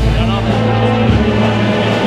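A Spanish processional brass band playing a march: sustained brass chords over a low bass line that steps to new notes a few times.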